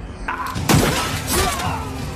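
Sudden crash of shattering glass under a second in, over film score music.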